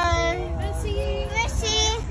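A young girl singing in long, held notes that glide up and down, over a steady low rumble.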